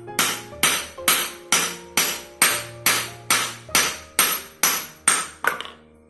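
Steel hammer striking a small piece of silver on a steel anvil: a steady run of about thirteen ringing blows, about two a second, stopping near the end.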